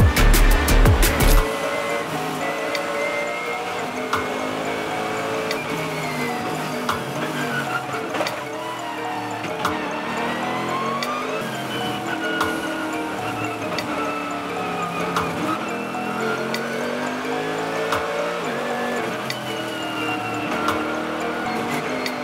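Onboard sound of a Mercedes-AMG GT3 race car's V8 at racing speed, its pitch climbing and dropping again and again as it accelerates, shifts and brakes. A loud drum-and-bass beat covers the first second and a half, then cuts off.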